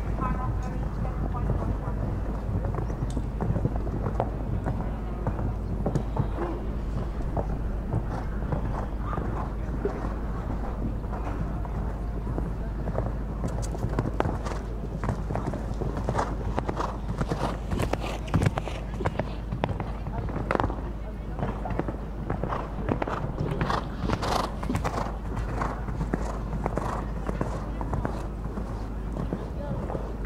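Horse cantering on a sand arena, its hoofbeats coming about twice a second, over a steady low rumble.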